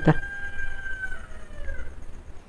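A faint, distant rooster crowing: one long, held call that falls in pitch at the end.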